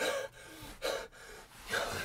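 A man gasping for breath, three sharp gasps about a second apart.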